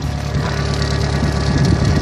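Mazda RF 2.0-litre four-cylinder diesel idling steadily, heard close at its tailpipe. It runs smooth and even, freshly started after sitting for three years.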